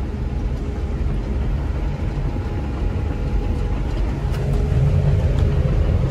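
Bulldozer's diesel engine running under load inside the cab as the machine drives forward, a steady low rumble with a faint steady whine over it, growing a little louder as it picks up speed.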